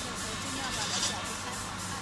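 Factory production-line machinery running: a steady hum under a high hiss that pulses about three times a second.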